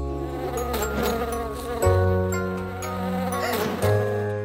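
A cartoon bee's buzzing sound effect over a short music sting of held chords, with a new chord about two seconds in.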